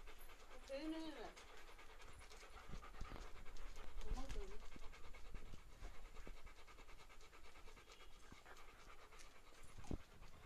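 A Rottweiler panting with its tongue out, a soft, rhythmic run of breaths.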